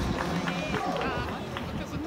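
Indistinct voices of people talking in the background, over steady outdoor ambience.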